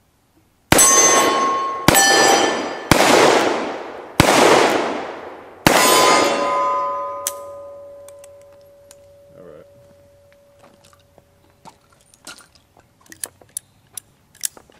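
Five shots from a Colt Single Action Army revolver in .45 Colt, a second or so apart, each with the ring of a struck steel target. The ring after the fifth shot fades over several seconds, and light clicks follow near the end.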